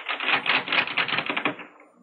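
Door handle and latch rattled hard in quick succession by someone trying to open a door that won't open: a fast run of clicking rattles that stops shortly before the end.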